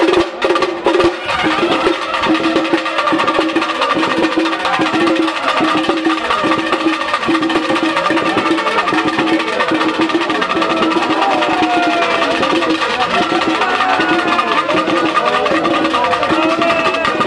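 Traditional temple-festival percussion music: drums struck with sharp, clacking strokes over a steady held tone. The strokes are heaviest in the first second or so, then settle into a dense, even beat, and a wavering melody comes in near the end.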